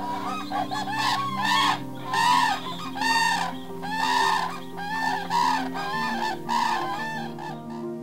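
Common cranes calling: a dozen or so short calls in quick succession, each rising then falling in pitch.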